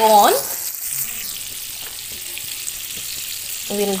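Butter sizzling and bubbling as it melts in a hot kadai, a steady high-pitched hiss.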